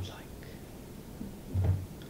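A pause in a man's speech: quiet room tone, then a brief soft spoken sound from him near the end.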